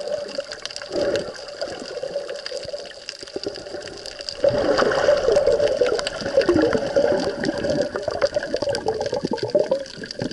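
Underwater sound picked up by an action camera in its waterproof housing: water sloshing and bubbling around it, with a steady crackle of tiny clicks. It grows louder and busier from about halfway in, then drops back right at the end.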